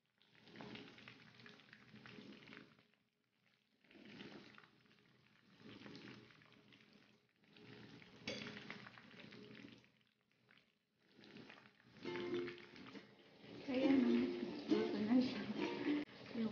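Batter-coated spinach leaves frying in shallow oil in a wok, sizzling in stretches of a second or two broken by short gaps. About twelve seconds in, louder pitched sound comes in over the sizzle.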